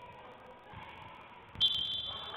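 Referee's whistle blown about a second and a half in: a sudden, piercing high blast that stops play on the basketball court.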